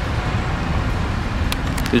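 Steady outdoor road-traffic noise with a low, uneven rumble.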